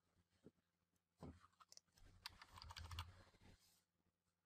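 Near silence with faint clicks of a computer keyboard and mouse, a scattered run of small clicks in the middle, over a faint low hum.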